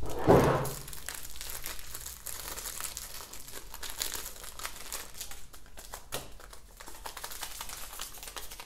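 Small packets of vanilla sugar being torn open and crinkled in the hands: a steady fine crackle of packaging that runs on for several seconds.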